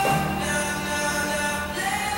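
Background music with singing, held notes over a steady low bass line.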